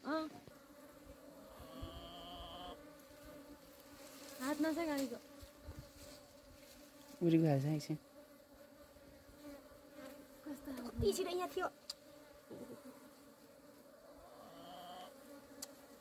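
A swarm of honeybees buzzing steadily in a cluster being handled by hand, a low even hum with a higher overtone. A few short voice sounds break in over it.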